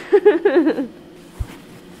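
A woman laughing briefly, in quick short bursts lasting under a second, then a short low thump about a second and a half in.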